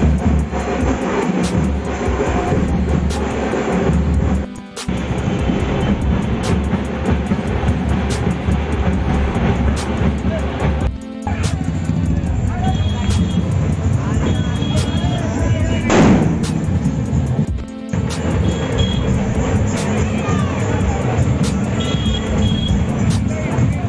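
Loud street-procession music with a heavy low beat, crowd voices, and frequent sharp cracks. The sound breaks off briefly three times.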